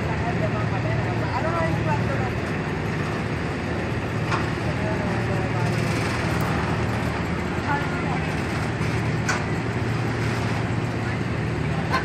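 An SUV engine running at a steady low idle as the Toyota Land Cruiser Prado creeps down a steep steel ramp, with scattered voices of onlookers and a few light clicks.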